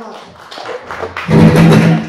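Live band's electric guitars and bass sounding a loud, sustained chord that starts suddenly about a second and a quarter in and is cut off near the end, with faint taps and plucks before it.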